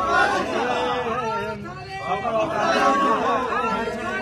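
Several people talking at once in a tightly packed crowd, overlapping chatter.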